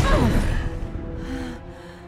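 A sharp hit with a quick whoosh and a gasp right at the start, as a metal shield is swung into a blow, then held notes of dramatic film score as the sound dies down.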